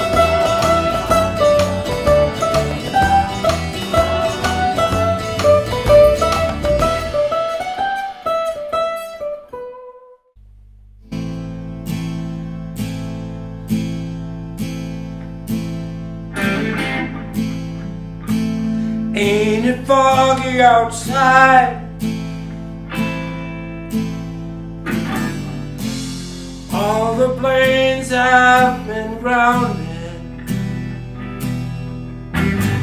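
Strummed acoustic guitar ending a song and dying away, then a short silence. About eleven seconds in, a new backing track starts with a steady bass and a regular beat, and melodic lines that bend in pitch come in over it, with electric guitar.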